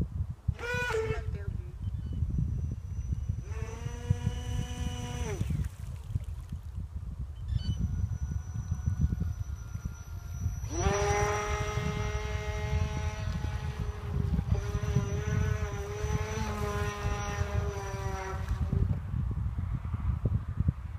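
Electric motor of a radio-controlled mini eco racing boat whining as it runs in bursts: a quick rising rev near the start, a burst of about two seconds a few seconds in, and a long steady run from about eleven to nineteen seconds. Wind rumbles on the microphone throughout.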